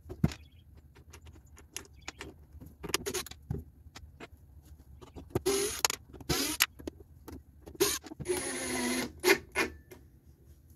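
Ridgid 18V cordless driver running in several short bursts as it drives screws through a metal hinge into cedar; the longest run comes near the end.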